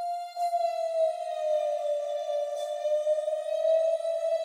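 Synth lead from Serum's 'Bottle Blower' preset, a breathy blown-bottle tone, playing a slow, simple melody on its own, heavy with reverb. A held note slides down to a lower one in the first second, and a slightly higher note follows past the middle.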